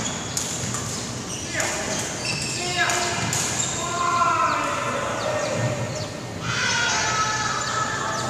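Badminton play in a reverberant sports hall: sharp racket strikes on the shuttlecock, short high squeaks of court shoes on the wooden floor, and players' voices.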